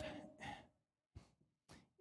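A man's reading voice trailing off at the end of a phrase, then a near-silent pause with one faint click and a short breath near the end.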